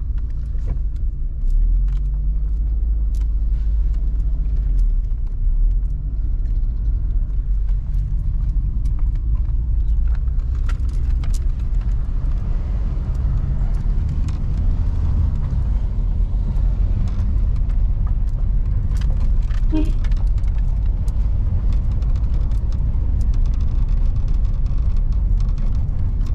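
Car cabin noise while driving slowly over a rough dirt road: a steady low rumble from the engine and tyres, with many small clicks and rattles throughout.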